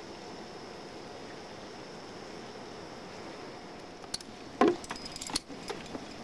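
Steady hiss, then about four seconds in a cluster of metallic clicks and clinks from climbing hardware, carabiners and gear being handled at an anchor, with one louder short sound among them.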